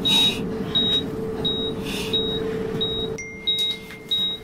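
Hospital patient monitor beeping during a resuscitation: a short, high electronic beep about every three quarters of a second over a steady low hum. A little past three seconds in the hum stops and a steady higher tone comes in.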